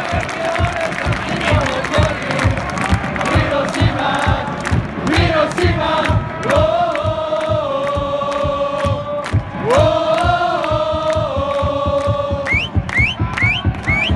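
Football supporters' chant: a stadium crowd singing together over a steady, fast drum beat, with long held notes in the middle. A few short rising high notes come near the end.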